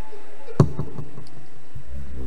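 A single sharp knock about half a second in, followed by a few fainter taps.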